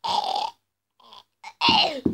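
A boy's strained, croaking vocal noises, made while gripping his own throat: a half-second croak at the start, then a louder groan that slides down in pitch near the end.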